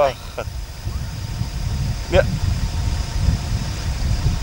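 A vehicle engine idling, a steady low rumble throughout.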